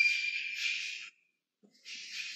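Chalk scratching on a blackboard as words are written, with a thin squeak running through it. It stops briefly a little past halfway and starts again near the end.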